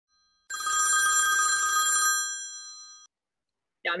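Telephone bell ringing once: a rapid, trilling ring about a second and a half long that then fades out.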